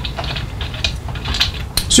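A spark plug being unscrewed by hand from a small two-stroke engine's finned cylinder head: a few small clicks and scrapes of metal on metal as the threads turn.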